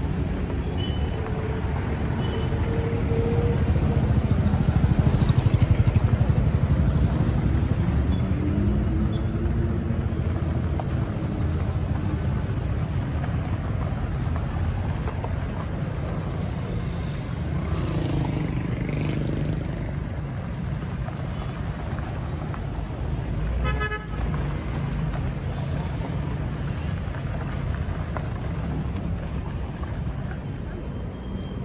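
Road traffic passing close by on a rough dirt road: car and motorcycle engines and tyres with a steady low rumble, loudest about five seconds in, and occasional car-horn toots.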